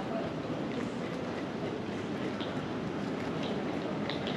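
Steady background noise of an airport terminal: an even low rumble and hiss with a few faint ticks.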